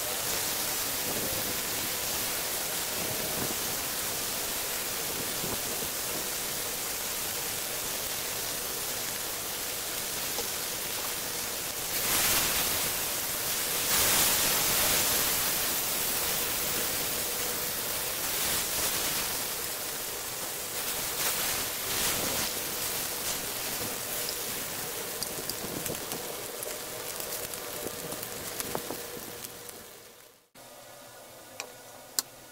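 Thin beef steaks and garlic slices sizzling in hot oil in a grill pan, a steady sizzle that surges twice about twelve and fourteen seconds in as the meat is turned, then thins into scattered pops and crackles toward the end.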